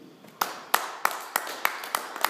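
Hand clapping that starts about half a second in: loud, distinct claps about three a second with fainter clapping between them, applause at the end of a spoken-word reading.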